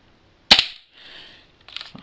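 Spring-loaded plastic 1911 BB pistol giving a single sharp snap of its spring mechanism about half a second in, followed by a few faint clicks near the end.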